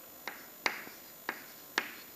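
Chalk tapping against a chalkboard as letters are written: four sharp taps, irregularly about half a second apart.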